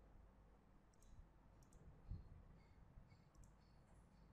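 Faint computer mouse button clicks over near-silent room tone, a few scattered ticks, with one soft low thump about two seconds in.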